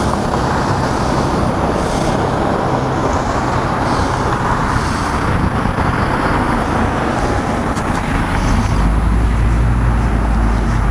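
Road traffic passing on a nearby town street: a steady wash of car and engine noise, with a deeper rumble building near the end as a heavier vehicle goes by.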